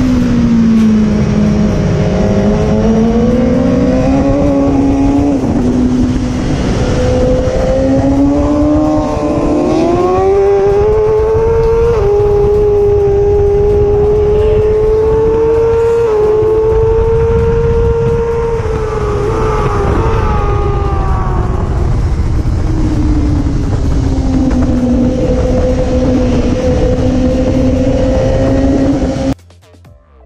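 Racing motorcycle engine running hard at high revs, its pitch climbing slowly over several seconds, holding, then falling and rising again. It cuts off suddenly near the end.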